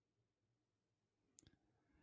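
Near silence in a pause between two speakers, broken by a faint short click about one and a half seconds in.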